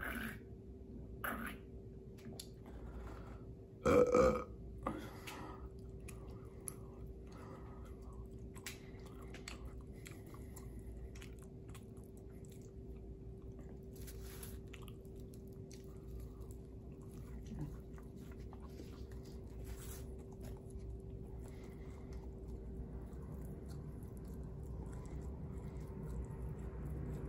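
A man burps once, loudly, about four seconds in, just after swigging beer from a can; a couple of short gulps come before it. After that there is close-miked wet chewing of a cheeseburger, with soft mouth clicks, over a faint steady hum.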